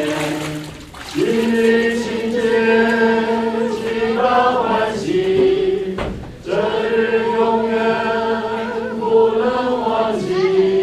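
A choir singing slow, long-held notes, with short breaks about a second in and again around six seconds in.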